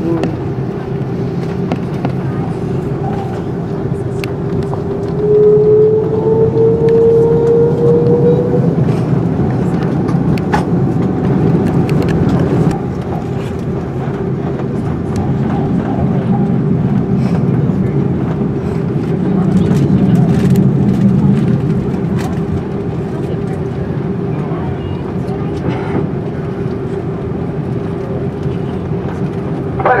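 Cabin noise of an Airbus A330-200 taxiing, heard from a window seat over the wing: a steady jet-engine hum with a constant whine. About five seconds in, a higher tone rises for a few seconds as the noise grows louder, and it swells again later on.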